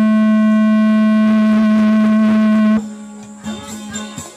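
A loud, steady electronic hum with a stack of overtones through the sound system, cutting off sharply about three seconds in. Faint plucked guitar notes follow near the end.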